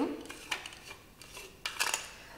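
A handheld filter shower head being twisted open by hand: a sharp click about half a second in, then a short run of clicking and scraping near the end as the parts come apart.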